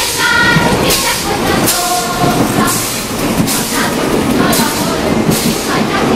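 Narrow-gauge steam locomotive and its coaches running slowly past, with a steady rolling rumble and rhythmic hissing beats about once a second.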